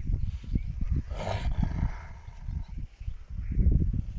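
Dogs growling low and irregularly, with a rougher, harsher noise about a second in.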